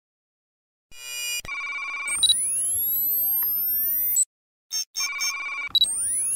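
Electronic sci-fi interface sound effect for a HUD 'initializing' animation. It starts about a second in with a fast electronic warble and pulsing beeps, then rising tone sweeps that cut off about four seconds in. Beeping and sweeps start again near the end.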